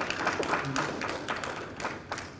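Audience applauding, a dense run of hand claps.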